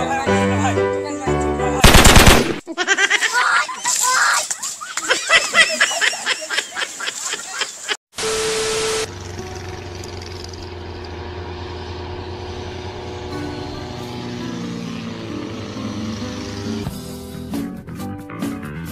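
Edited compilation audio. Music with a beat, then a sudden very loud burst about two seconds in, then a run of rapid repeated cracks. After a sharp cut about eight seconds in, a loud steady tone lasts a second, followed by a steady drone with held tones and a new rhythm starting near the end.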